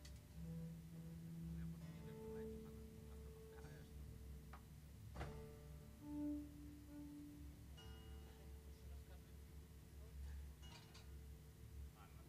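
Quiet, slow live jazz trio passage: an upright double bass plays long held notes one after another, with a few faint taps between them.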